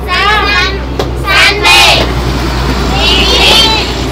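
Children's voices speaking in three short, high-pitched bursts, over a steady low hum.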